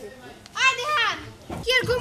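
Speech only: a high-pitched voice talking, with background music coming in near the end.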